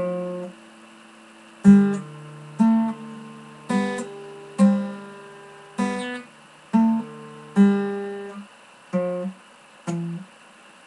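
Guitar played slowly by a self-taught beginner, plucked with the fingers rather than a pick: a simple phrase of single notes and small chords, about one pluck a second, each left to ring and fade.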